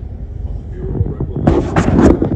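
Wind buffeting a phone's microphone: a steady low rumble that swells into a loud, gusty blast about a second and a half in.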